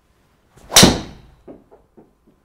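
A golf driver striking a teed ball at speed: one sharp, loud crack with a short ring-out, followed by a few faint knocks.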